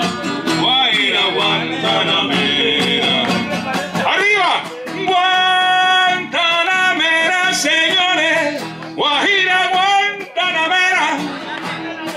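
A classical guitar strummed in accompaniment under a man singing into a microphone, with long held notes and sliding pitch.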